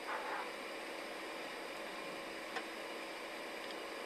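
Faint steady hiss of a recorded phone line during a pause in the call, with a brief faint sound at the very start and one small click about two and a half seconds in.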